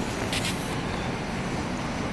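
CAF Boa metro train giving a steady rumble alongside the platform, with a brief hiss about half a second in.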